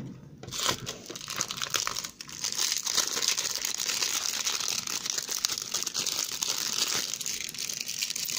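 Foil Match Attax card-packet wrappers crumpled and scrunched in the hands, a steady crackling.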